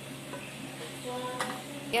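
Kadhi curry boiling in a pan on a high gas flame: a steady sizzling, bubbling hiss, with a brief clink about a second and a half in.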